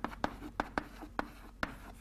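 Chalk writing on a blackboard: a string of about ten short, sharp taps and strokes as characters are chalked on.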